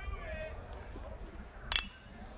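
A single sharp ping of a metal baseball bat striking a pitched ball, about three-quarters of the way through, over faint crowd chatter.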